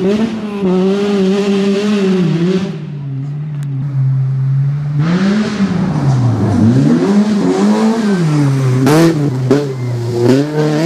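BMW E30 rally car's engine revving hard as it pulls away on loose gravel. After a quieter stretch it comes closer, the revs climbing and dropping through several gear changes, and about nine seconds in the car hits water in a loud splash.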